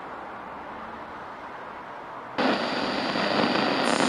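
Steady hiss-like noise that jumps abruptly louder and brighter about two and a half seconds in.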